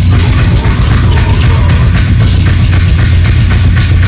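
Deathcore band playing live at full volume: heavy, low distorted guitars and bass under fast, steady drumming.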